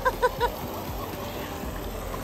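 Steady rush of water falling from a thermal pool cascade into the pool. Three quick, short pitched notes sound in the first half second.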